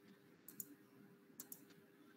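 Near silence with faint computer mouse clicks: two quick double clicks about a second apart, over a faint steady hum.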